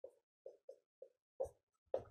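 Marker writing on a whiteboard: about five short, faint strokes spread over two seconds.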